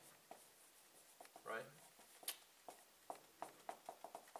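Faint pencil strokes on paper as shadow lines are hatched in: short scratchy ticks, sparse at first, then coming quickly, about a stroke every third of a second, in the last half.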